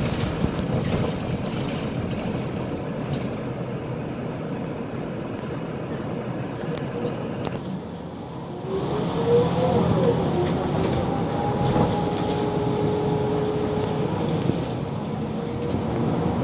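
City bus heard from inside the cabin: steady engine and road noise that eases off, then the bus pulls away about nine seconds in with a rising engine and drivetrain whine that settles into a steady tone.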